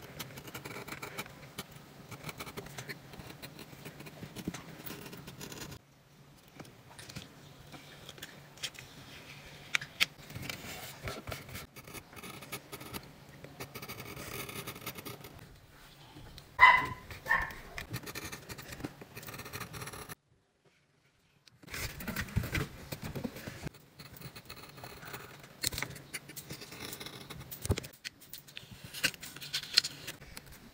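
Close handling sounds of paper sticker sheets: stickers peeled off their backing with metal tweezers and pressed onto a journal page, giving soft scrapes, rustles and light clicks. Partway through comes a brief, loud, high-pitched sound in two quick parts. A few seconds later the sound drops out to silence for about a second and a half.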